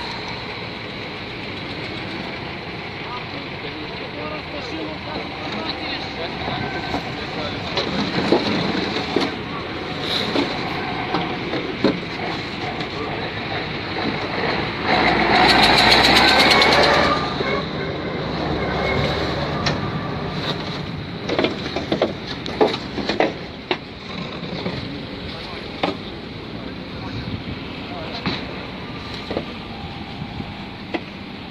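Municipal machinery engines running amid background voices, with a heavy vehicle's engine loud up close for a couple of seconds about halfway through. A few sharp knocks follow shortly after.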